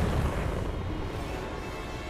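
Cartoon sound effect of a crashing spaceship: a low explosion rumble that slowly fades, under music.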